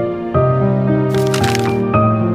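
Soft melodic background music with sustained, gently changing notes. A brief crackling noise cuts in about a second in and lasts under a second.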